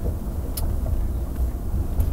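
Low, steady road and engine rumble heard inside a moving car's cabin, with one short click about half a second in.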